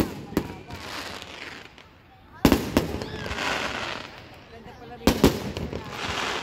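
Aerial fireworks going off: a sharp bang at the start, then a pair of loud bangs about two and a half seconds in and another pair just after five seconds, each followed by a noisy haze. People's voices carry on underneath.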